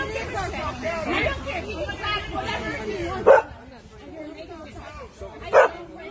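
Overlapping voices of several people talking at once during a physical struggle, with two short, loud cries about three and five and a half seconds in.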